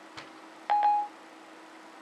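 iPhone 4S Siri chime: a short two-note electronic tone about three-quarters of a second in, the signal that Siri has stopped listening and is working on the spoken request. A faint click comes just before it.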